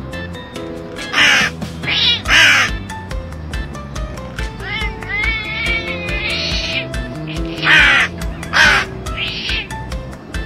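Hooded crow cawing: three loud caws in the first few seconds and two or three more near the end. Background music with a steady beat runs underneath.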